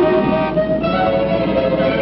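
Orchestral cartoon background music, with held notes that change every second or so.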